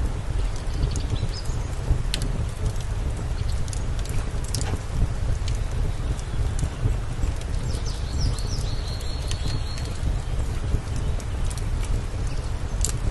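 Wood fire crackling with scattered sharp pops under a steady low rumble. A few short high chirps come in about eight to ten seconds in.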